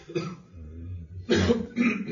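A man clearing his throat and coughing in short bursts, the loudest coming in the second half.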